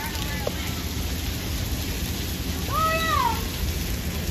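Outdoor water-play ambience: steady noise of running and splashing water with a constant low rumble, and a child's high, drawn-out voice rising and falling about three seconds in.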